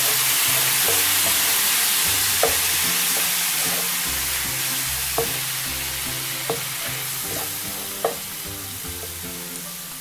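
Water hitting hot oil with frying onions, chillies and spices in a nonstick pan: a dense sizzling hiss that fades slowly as the water cooks off. A wooden spatula stirring the mix clicks against the pan four times.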